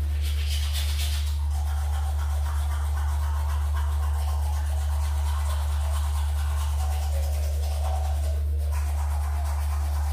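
Manual toothbrush scrubbing teeth in quick repeated strokes, over a steady low hum.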